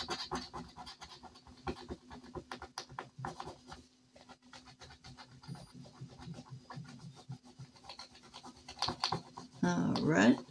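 A thin metal scratcher tool scratching the coating off a paper scratch-off sheet, in quick, irregular strokes, with a faint steady hum underneath.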